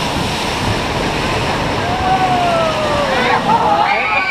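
Rushing, spraying water beside a log-flume boat: a loud steady rush. About halfway through a single pitched tone slides downward, and voices come in near the end.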